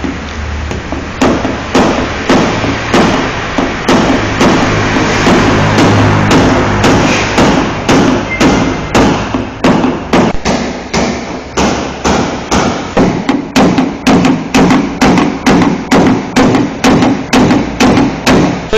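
Paintless dent repair: a small hammer striking a knockdown punch against a car roof's sheet metal, light blows repeated at about two a second to level a dent.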